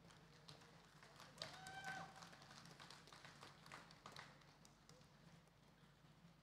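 Near silence: quiet hall tone with a few faint taps and clicks, and a faint distant voice briefly about one and a half seconds in.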